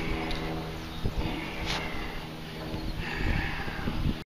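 Rustling and low thumps as a freshly caught channel catfish is handled and lifted off the grass, over a steady low hum.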